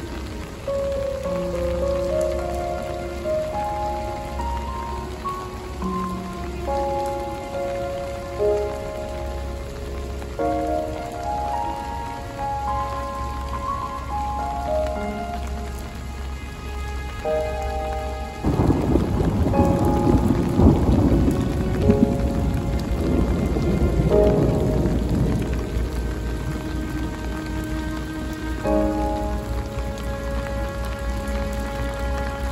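Steady rain falling on wet paving stones, with soft melodic background music over it. A little past halfway, a low rumble swells up for about seven seconds and then sinks back under the rain and music.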